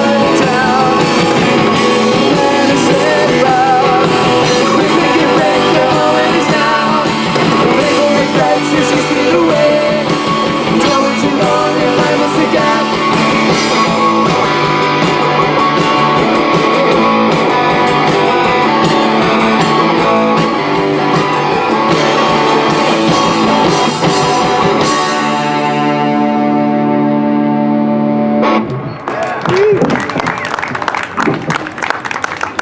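Rock band playing live: electric guitar, bass and drum kit with singing. About 25 seconds in the drums stop and a held chord rings on, then dies down near the end.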